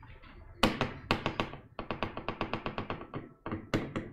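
Clicking and tapping of computer keys: a few separate clicks, then a quick even run of about ten clicks a second, then a few more.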